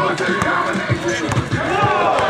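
A basketball dribbled on an outdoor asphalt court, with a run of bounces in the second half, amid players' shouting voices.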